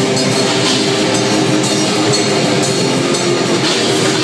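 Live metal band playing loud and steady: distorted electric guitars over a drum kit with regular cymbal hits, recorded with almost no deep bass.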